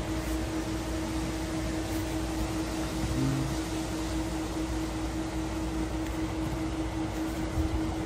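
Steady wind noise on a phone microphone, a rumbling hiss, with a constant low machine hum underneath.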